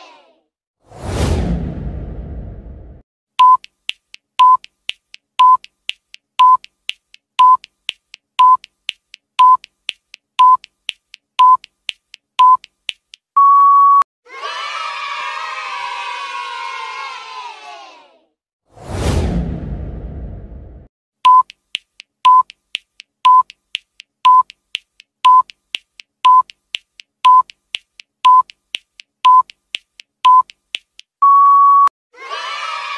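Quiz countdown timer sound effect: a short beep with a tick once a second, ten times, ending in a longer held beep. It is framed by a rising whoosh with a low rumble before it, and by a crowd-cheering effect, a second whoosh and the once-a-second beeps starting over after it.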